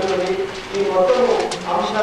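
Speech: a man talking steadily into a microphone.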